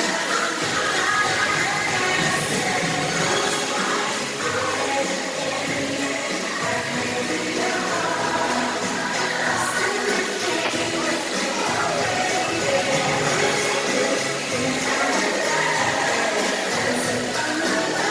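Background music with singing, playing steadily throughout.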